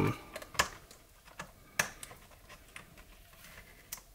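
A few small, sharp clicks of hard plastic with faint rustling between them, the loudest about two seconds in. They come from a plastic toy figure and its clear plastic blister tray being handled by hand.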